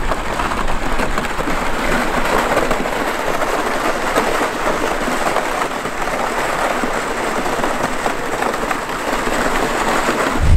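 Loaded plastic ice-fishing sled dragged across the ice, its hull scraping steadily over the frosty surface.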